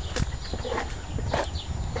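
Footsteps and handling noise from a handheld camera carried through a garden: a few irregular knocks and rustles over a low rumble.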